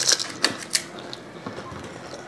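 A few short, crisp cracks and clicks in the first second, then quieter: hollow fried panipuri shells cracking and crunching as they are broken open and eaten.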